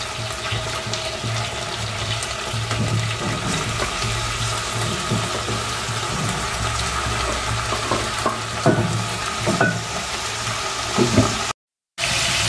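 Chicken and onions frying in oil in an aluminium pot, a steady sizzle as the chopped tomatoes go in, with a few light knocks in the second half. The sound cuts off suddenly just before the end.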